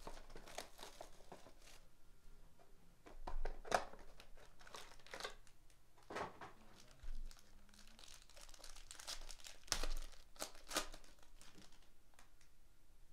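Packaging of a Panini Crown Royale basketball card box and its foil card pack crinkling and tearing as they are opened by hand, in several short rustling bursts with softer crinkling between.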